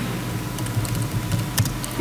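Laptop keyboard being typed on: a quick run of light key clicks over a steady low room hum.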